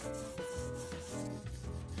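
A paintbrush scrubbing paint across a stretched canvas in repeated strokes, over soft background music with held notes and a pulsing bass.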